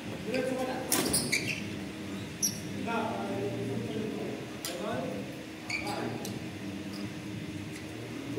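Badminton rally: rackets striking the shuttlecock in several sharp hits a second or two apart, with sports shoes squeaking on the court and voices in a large echoing hall.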